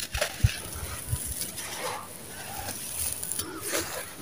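A dry sand-cement chunk crunching and crumbling in bare hands, with gritty crumbs pouring onto a loose pile. A few dull thumps are heard, the loudest about half a second in.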